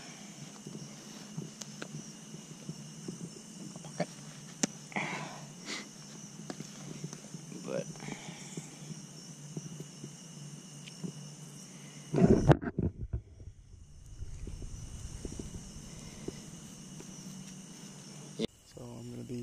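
Steady chorus of night insects with faint rustling and light clicks as hands pick apart a cigarette for its tobacco. A loud low rumbling thump comes about twelve seconds in.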